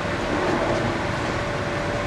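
Steady mechanical noise with a constant mid-pitched hum, cutting in suddenly at the start: a machine running in the background.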